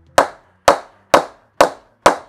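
A wooden bat mallet tapping the toe of an unoiled, not yet knocked-in English willow cricket bat four times, evenly, about two strikes a second, to test the press. The toe is judged to have nice press.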